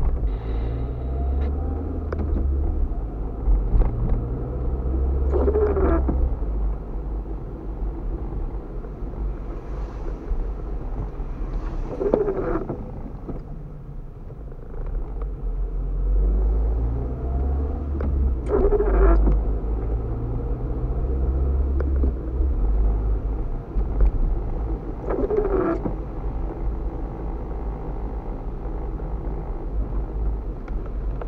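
Car cabin on a rainy drive: steady engine and tyre rumble, with the windshield wipers on an intermittent setting making four sweeps, each with a short blade squeak, about six and a half seconds apart.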